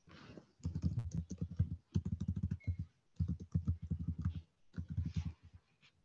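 Computer keyboard typing in four bursts of rapid keystrokes, each about a second long, heard over an open video-call microphone.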